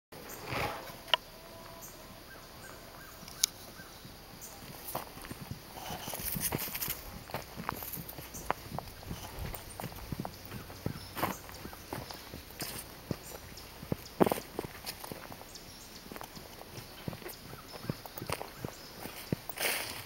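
Irregular footsteps on dry ground and grass: scattered short steps and clicks, with two sharper knocks about one and three and a half seconds in.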